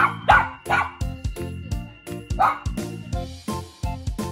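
Bichon Frise giving about four short, sharp barks in play, three in quick succession at the start and one more about two and a half seconds in, over background music with a steady beat.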